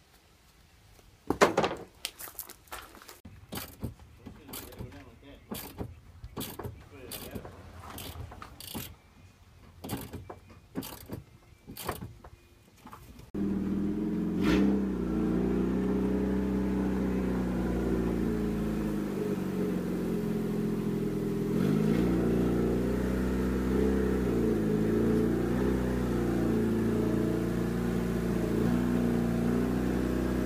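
A series of sharp clicks and knocks. About thirteen seconds in, a hobby stock race car's engine takes over, idling steadily, its pitch dipping slightly a couple of times.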